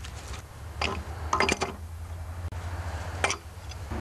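A few short metallic clicks and clinks, spread through the few seconds, as the washer and nut go back onto the flywheel of a 3.5 HP Briggs & Stratton engine and are tightened.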